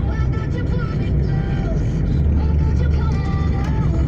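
Steady low rumble of a car's engine and tyres heard from inside the cabin while driving, with background music of slow, held notes over it.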